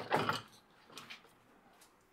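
Faint knocks and rubbing of a metal log-sawing jig, the Little Ripper, being set onto and shifted on an aluminium sliding bandsaw table, with small clicks about a second in and near the end.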